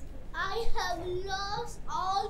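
A child singing, high-pitched phrases with some notes held steady.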